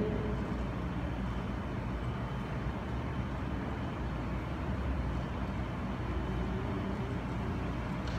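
Steady low rumble with a faint hiss: the background noise of the hall, with no distinct events.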